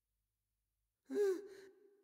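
Silence, then about halfway a person's cry with a breathy gasp, its pitch rising then falling before a fainter held tone trails off.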